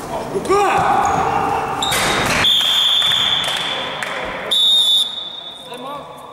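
Referee's whistle stopping play: one long blast of about two and a half seconds, then a short, louder second blast. Players shout just before it.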